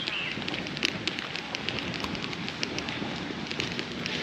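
Outdoor ambience of rapid, irregular crackling clicks over a steady hiss, with a brief bird chirp at the very start.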